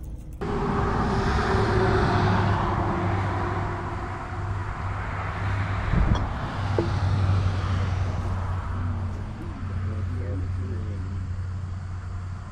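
Outdoor background noise: a steady rushing with a constant low hum, rising and falling gently in level, with a single knock about six seconds in and faint distant voices near the end.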